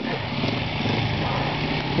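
KTM off-road motorcycle engine running at low revs, its pitch wavering slightly up and down.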